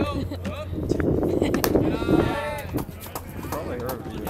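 Spectators' voices chatting and calling close to the microphone, with a high-pitched, drawn-out call about two seconds in.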